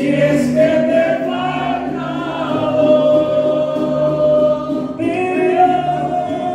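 Mariachi band playing live, with guitarrón and vihuela accompanying singing in long held notes. The melody moves to a new note about half a second in and again at about five seconds, over a repeating bass line.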